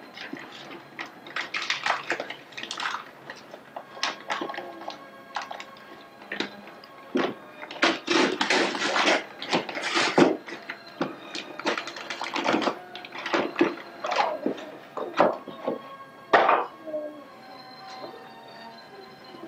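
Wrapping paper torn and crumpled as a present is unwrapped, in a dozen or so short rustling bursts, with music playing faintly in the background.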